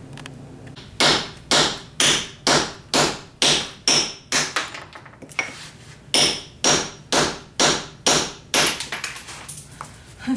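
A hammer strikes a chisel against old ceramic backsplash tile to chip it off the wall. There are sharp, ringing blows about two a second in two runs, with a short pause near the middle.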